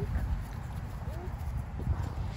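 Low rumble and irregular soft thumps of a handheld phone microphone being jostled as it swings around.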